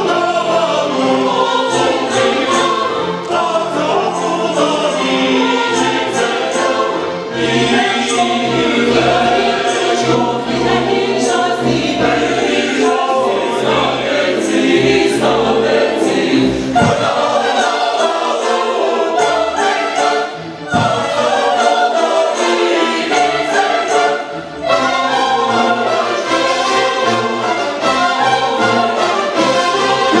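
Mixed choir of men's and women's voices singing in harmony, with a few brief breaks between phrases.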